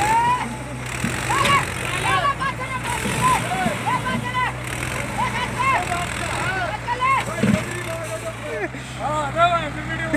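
Mahindra Arjun 605 tractor's diesel engine idling steadily, with several men talking over it.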